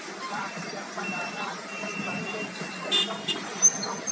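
Street traffic at an intersection: cars and electric scooters passing, with a steady hum of road noise and a couple of short, sharp sounds about three seconds in.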